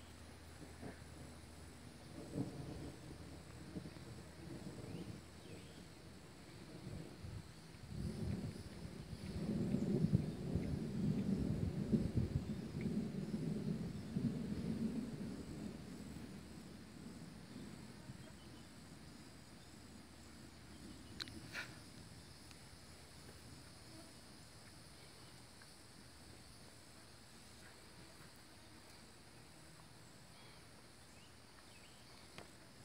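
A long roll of distant thunder that swells about eight seconds in, peaks and slowly fades over the next ten seconds. It sits over a steady high drone of insects, with a short high chirp near the end.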